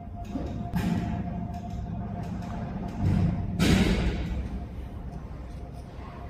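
Background music with two sudden swells, about a second in and about three and a half seconds in, the second the loudest and fading away over about a second.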